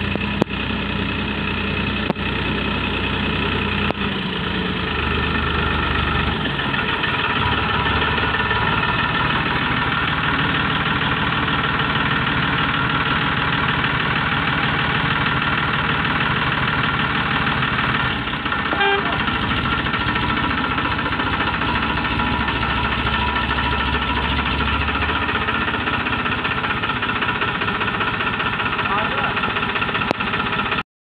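Farmtrac 45 EPI tractor's diesel engine running steadily under load as it pulls a loaded trolley, its note shifting a few times as the throttle changes.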